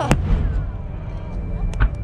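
Aerial firework shells bursting: a sharp bang just after the start, another a moment later, and the loudest deep boom near the end.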